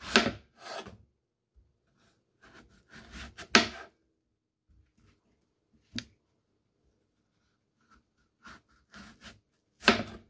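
Kitchen knife slicing through a peeled hairy gourd: each cut is a short rasping stroke through the firm flesh that ends in a sharp knock of the blade on the wooden cutting board. There are several such cuts a few seconds apart.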